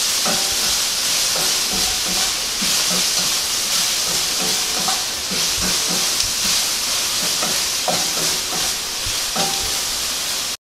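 Okra and spicy peppers sizzling steadily in hot oil in a stainless steel skillet as they are stir-fried with a wooden spatula, which knocks and scrapes against the pan now and then.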